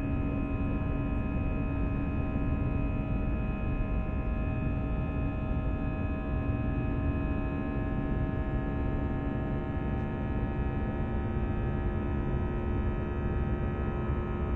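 Airbus A320 cabin noise in flight, heard near the wing: a steady low rumble of engines and airflow with several steady engine tones held over it. A lower hum among them fades out about five seconds in.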